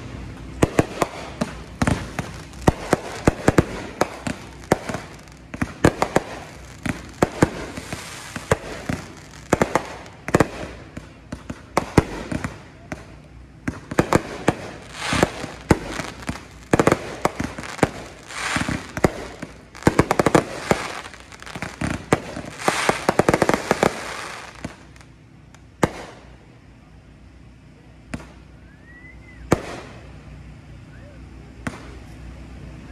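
Aerial fireworks display: a rapid run of sharp bangs and crackling bursts that dies away about five seconds before the end.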